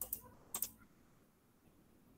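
Two short clicks at a computer, about half a second apart, the second one doubled, as of a key or mouse button pressed and released.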